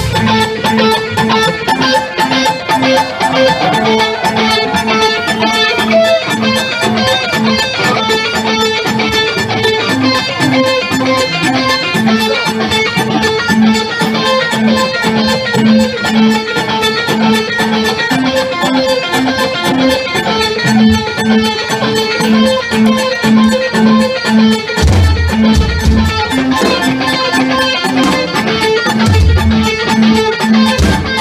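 Electric guitar played loud through an amplifier, picking a short riff of a few notes that repeats over and over. Deep low thumps come in briefly a few times near the end.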